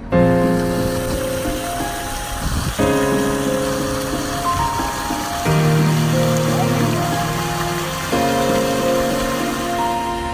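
Slow background music with held chords that change every few seconds, over a steady hiss of water splashing from a tiered fountain.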